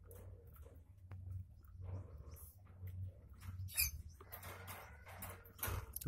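Faint, high-pitched squeaks from a small animal at the nest, one squeak about four seconds in, among scattered soft clicks and rustling.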